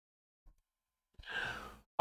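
Near silence, then about a second in a man's short breathy sigh, lasting about half a second.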